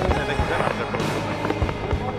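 Aerial fireworks going off, several sharp bangs spread through the moment, over music and crowd voices.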